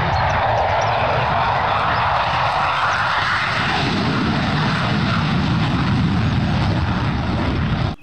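F-16 fighter jet's engine running on afterburner as it rolls down the runway and lifts off: a loud, steady roar.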